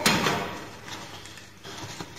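Cardboard box and paper packaging handled as an exhaust tip is unpacked: a sharp knock right at the start, then rustling of wrapping paper with a few small clicks.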